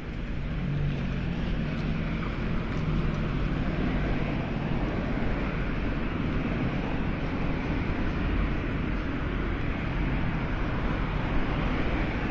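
Street traffic noise with wind buffeting the microphone. A car's engine hums close by for the first few seconds as it drives across the street.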